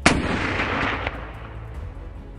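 A single rifle shot: a sharp crack with a long rolling tail that dies away over about a second, with a smaller crack about a second in.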